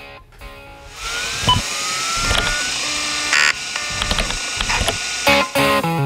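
Intro sound design: a noisy swell with rising whistle-like glides and scattered clicks, then electric guitar theme music kicking in with a steady rhythm about five seconds in.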